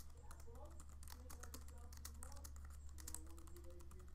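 Faint typing on a computer keyboard: a quick, irregular run of key clicks over a low steady hum.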